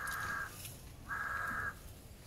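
A crow cawing twice: two harsh calls, each about half a second long, the second a little over a second after the first.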